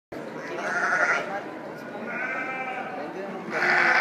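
Dorper sheep bleating three times in a row, over a low murmur of voices.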